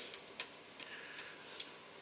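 Quiet room tone with four faint clicks, evenly spaced a little under half a second apart, the last one slightly louder.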